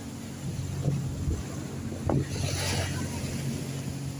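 Wind buffeting the microphone with a steady low rumble, over small sea waves washing against a concrete shore embankment; one wash of surf comes through more clearly a little past halfway.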